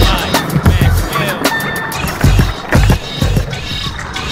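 Skateboard wheels rolling on concrete with sharp clacks of the board, over a hip-hop backing track with a steady beat.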